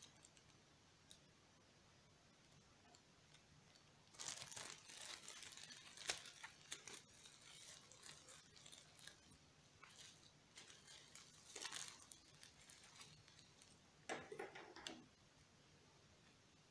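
Faint crinkling of plastic bubble wrap being handled and pulled open to unwrap a wristwatch, in a few short spells of crackle with near silence between them.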